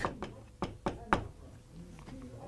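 A marker pen writing on a whiteboard, making several sharp taps and clicks as the strokes of a word go down, mostly in the first half.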